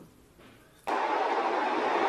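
Near silence for about a second, then a steady hiss of background noise that starts suddenly and runs on evenly.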